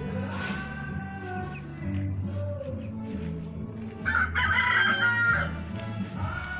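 A rooster crowing, one loud call about a second and a half long starting about four seconds in, over background music.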